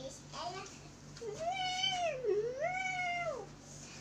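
A child imitating a cat: two long meows, each rising and then falling in pitch.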